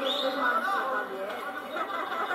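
Indistinct chatter of several people's voices talking over one another, with no clear words.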